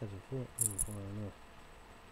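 A man's voice speaking a few words, then falling quiet about halfway through.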